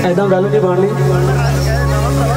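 A man's voice amplified through a microphone and PA system over a steady low held note from the backing music.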